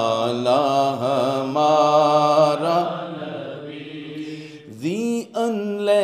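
A man singing a naat, an Urdu devotional poem, in long wavering held notes. The voice fades over the middle of the stretch, then slides upward into a new phrase about five seconds in.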